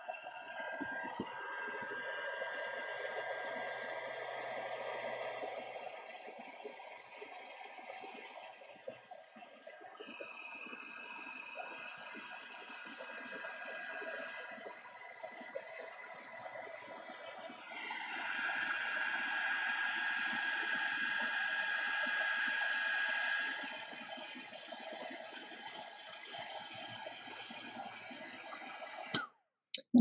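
Craft heat gun running steadily, blowing hot air over a paper bead on a metal mandrel to melt ultra thick embossing powder. Its whine and airflow grow louder for about five seconds past the middle.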